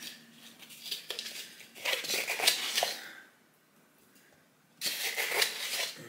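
A plastic scoop scraping and rustling in a tub of powdered supplement, with powder tipped into a plastic shaker bottle. It comes in two spells of scratchy rustling with a pause of about a second and a half between.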